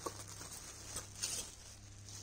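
Short scratchy rustles of shirts and their clear plastic packaging being handled, a cluster of quick ones around a second in, over a low steady hum.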